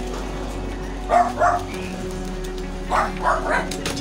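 A dog barking over background music: two barks about a second in, then three more in quick succession near the end.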